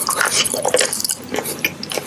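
Close-miked mouth biting into and chewing a square of Tirol chocolate: a quick run of wet clicking and smacking mouth sounds.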